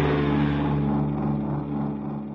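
Low, steady droning tone of a trailer's closing sound-design hit, ringing on and slowly fading.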